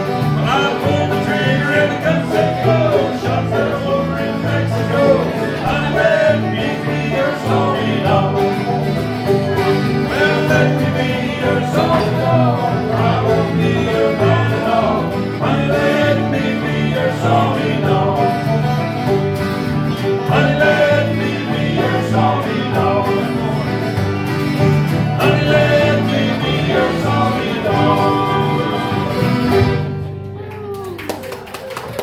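Live bluegrass band playing with banjo, mandolin, acoustic guitars and bass guitar; the song ends right at the close.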